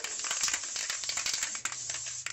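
Aerosol can of Gorilla Glue spray adhesive being sprayed in one continuous hiss, with crackly spitting clicks through it.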